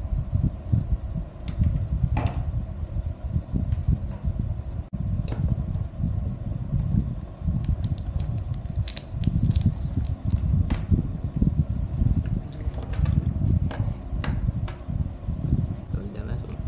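Continuous low rumbling noise, with a few scattered sharp clicks of keys being pressed on a tablet's snap-on keyboard cover.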